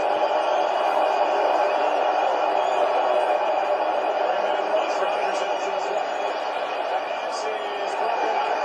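Audio of a televised football game from the TV set: a steady stadium crowd din with the broadcast announcers' voices over it.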